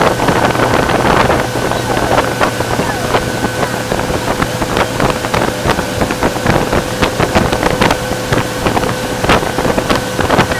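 Motorboat running at speed under tow load, its engine a steady drone with a constant whine, under wind buffeting the microphone and the rush of water in the wake.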